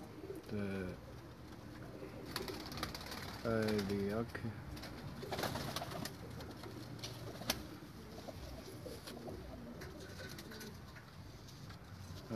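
Domestic pigeons cooing faintly, with a few sharp clicks from handling and a short spoken word about four seconds in.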